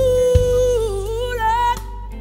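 A male gospel singer's voice holding a strong sung note that breaks into a wavering melismatic run and climbs to a higher note, stopping shortly before the end, with the band playing underneath.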